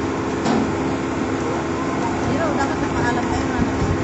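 Indistinct background voices of people talking, over a steady mechanical hum and general noise.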